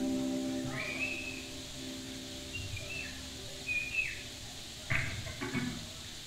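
A sustained chord from the band fades out while several short, high whistles come from the audience; two brief loud bursts, like shouts, come near the end.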